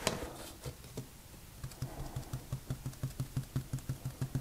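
Paint marker tip tapping rapidly against paper along a ruler's edge, light, even taps about seven a second, after a single sharp click at the start.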